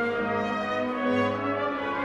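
Opera orchestra playing sustained chords, with brass and horns to the fore.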